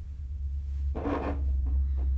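A brief rub and scrape about a second in, from a hand micrometer being handled and set against a machined aluminium part, over a steady low hum.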